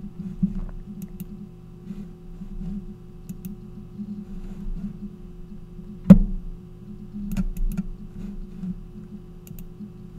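Steady low electrical hum with a few faint computer-mouse clicks, and one sharper click about six seconds in.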